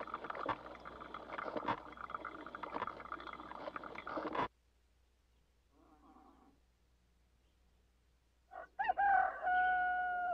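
Drip coffee maker gurgling and hissing as it brews, with small pops and clicks; it cuts off abruptly about four and a half seconds in. Near the end a rooster crows once, a call that rises and then holds.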